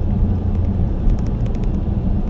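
Car on the move, heard from inside the cabin: a steady low rumble of engine and tyres on a wet road, which swells just before this moment and then holds level.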